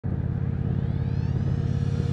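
Motorcycle engine running at a steady pace while riding, a low rumble.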